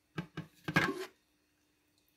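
Glass lid of a Crock-Pot slow cooker being lifted off its ceramic crock: three short clinks within the first second.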